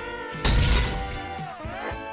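Glass-shattering sound effect about half a second in, a sudden crash that fades away over about a second, over background music with steady held notes.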